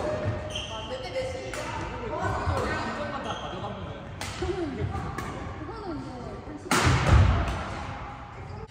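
Doubles badminton rally in a large hall: rackets hitting the shuttlecock and players' feet on the court, with their voices calling out. A loud thud near the end is the loudest sound.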